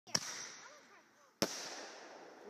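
Two sharp firework bangs about a second and a quarter apart, each followed by a fading hiss.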